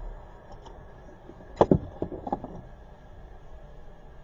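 Low, steady car-cabin hum, with one sharp knock about a second and a half in and a few lighter knocks or clicks just after it.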